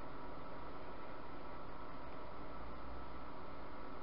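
Steady, even hiss: room tone with no distinct sound in it.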